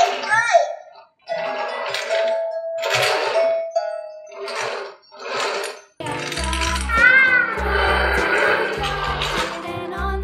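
Electronic toy sounds from a VTech pony-and-carriage playset: short separate chime and sound-effect bursts, then, when the rider figure on the pony is pressed about six seconds in, a bright melody with a steady bass beat.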